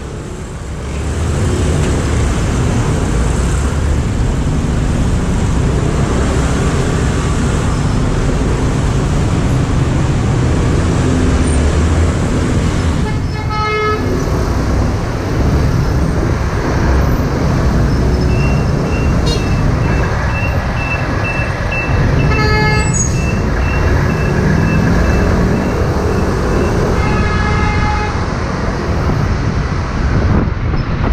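Dense city motor traffic heard from a moving scooter: a steady low rumble of engines and road noise, with three short car-horn toots, the last near the end. A high repeated beeping runs for several seconds in the second half.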